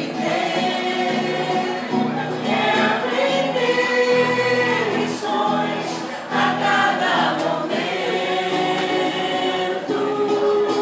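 A vocal group singing together as a choir, with long held notes.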